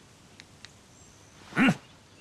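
A man's short, closed-mouth "mm" of assent: one brief hum that rises and falls in pitch, about a second and a half in. The rest is quiet, with a couple of faint clicks.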